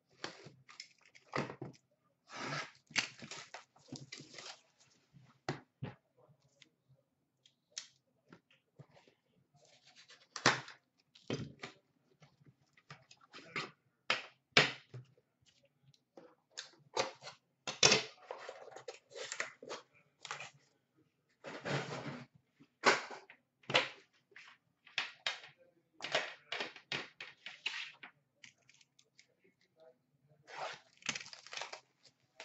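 A sealed hockey card box being unwrapped and opened by hand: irregular bursts of tearing and crinkling plastic wrap, and cardboard being scraped and handled. Now and then a sharper knock comes as a metal tin is handled.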